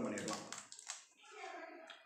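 Lid of a small plastic dip cup being peeled and prised off by hand: a few light, scattered plastic clicks and crackles.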